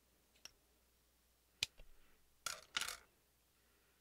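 Handling noises of leather cording being wrapped around a glass jar: a sharp click, then two short scraping rustles close together about a second later.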